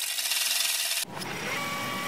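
Transition sound effect under an animated title card. A harsh, scratchy hiss fills about the first second and stops abruptly, then gives way to a duller buzzing texture with a faint held tone.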